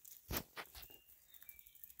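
Dachshunds' claws clicking and tapping faintly on a concrete floor, two sharp taps close together near the start.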